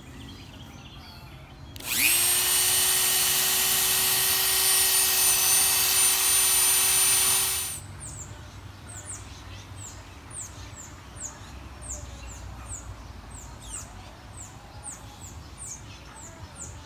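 Handheld rotary tool spinning up about two seconds in, running at a steady high whine for about six seconds, then switched off. After it, a bird chirps over and over, short high notes sliding downward about two a second.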